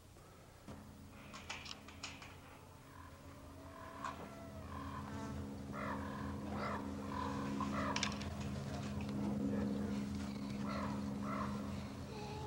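Chickens clucking in a run of short calls over a steady low hum that slowly grows louder.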